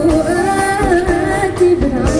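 A young girl singing a held, slightly wavering melody into a microphone over live band accompaniment, her note changing about a second and a half in.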